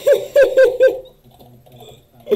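A man laughing in four short, loud, hooting bursts about a second in.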